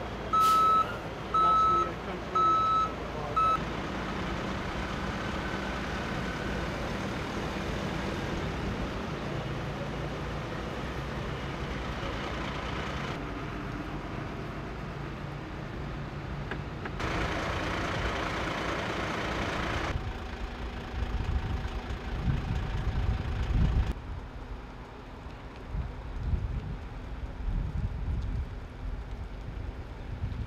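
Fire truck's reversal alarm beeping about once a second for the first three seconds or so, over the engine running. Steady vehicle engine noise follows, with irregular low rumbles near the end.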